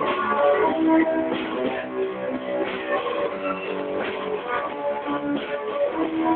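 A small band playing together with strummed guitars, coming in on the count of four. The recording is dull and lo-fi.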